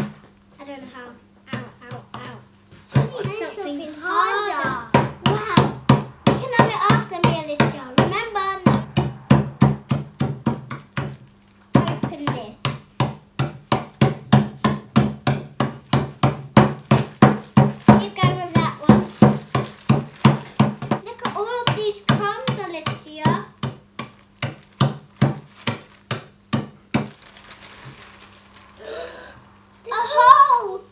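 A wooden rolling pin pounding cookies in a plastic zip-lock bag on a tabletop, crushing them. It makes a long run of quick, even knocks, about three a second, which stop near the end.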